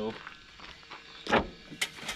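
A short knock and a few sharp clicks from an engine's oil dipstick being pulled out of its tube and handled.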